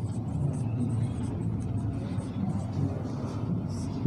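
A marker pen writing on a whiteboard, faint scratchy strokes over a steady low background rumble.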